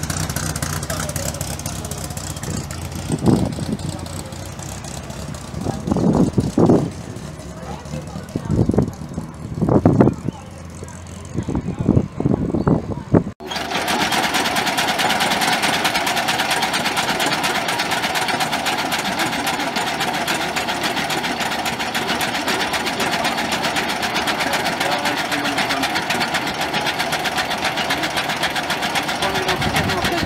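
A Morris Minor convertible's engine running as the car pulls away, fading out. From about 13 seconds in, the 1907 Holsman high-wheeler's engine runs steadily at a standstill with a fast, even clatter.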